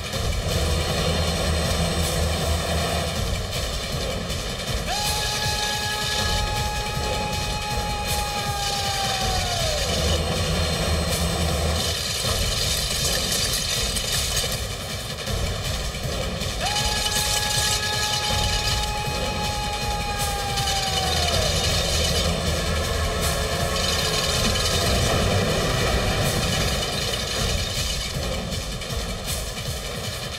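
Train running at speed, a steady rushing rumble; its horn sounds two long blasts of about four seconds each, about five seconds in and again about seventeen seconds in, each sagging in pitch as it dies away.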